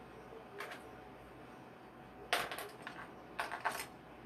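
Small hard parts clicking and clinking as a sewing-machine presser foot is picked up and handled: a faint click near the start, then two short bursts of clicks and rattles about two and three and a half seconds in.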